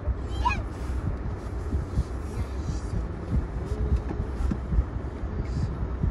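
Steady low rumble of a car heard from inside its cabin, with a brief high-pitched voice-like squeal about half a second in.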